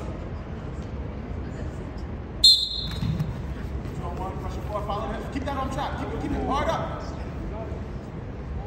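One short, sharp blast of a referee's whistle about two and a half seconds in, the signal that starts the wrestling from the referee's position. After it, voices shout in a large gym.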